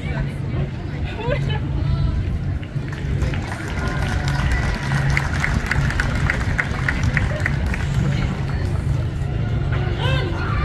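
Outdoor crowd chatter and voices over a steady low hum. Midway through, a run of about a dozen short, evenly spaced high pips comes at roughly three a second.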